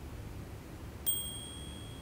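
Pantaflix logo sting: a single high electronic ding about a second in, a clear steady tone that rings on for about a second over faint hiss.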